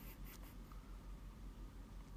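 Quiet room tone with a low steady hum and faint scratchy handling noise on the microphone.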